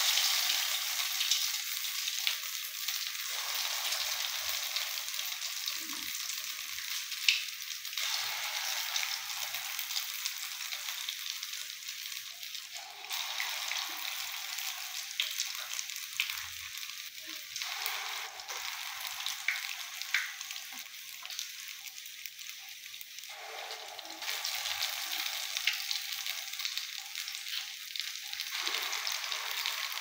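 Akara (ground-bean batter fritters) deep-frying in hot oil: a steady sizzle flecked with small crackling pops. It is strongest just after the start, eases off gradually, and builds again in the last few seconds.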